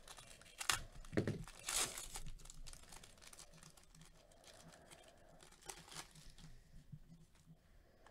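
Foil wrapper of a trading-card pack being torn open and crinkled, in several loud crackling strokes over the first two or three seconds, then quieter rustling with one more crinkle about six seconds in.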